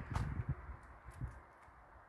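A few soft, low thumps and one sharp click in the first half second, then a faint hush with one more soft thump just past a second in.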